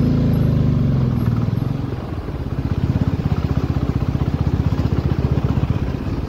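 Motorcycle engine running at low road speed, heard from the rider's seat as a steady pulsing throb; the note eases off briefly about two seconds in, then runs on evenly.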